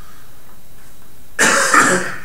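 A person coughing: a loud, short cough with two quick pushes near the end.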